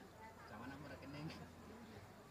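Faint background of low voices over a steady low hum, with no distinct event.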